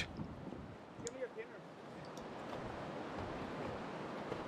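River current running over a shallow rocky rapid, a steady rush of water that grows a little louder in the second half.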